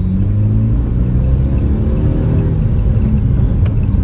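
Tata Nano's rear-mounted two-cylinder petrol engine pulling in first gear, heard from inside the cabin. Its pitch rises over the first two seconds as the car accelerates, then eases.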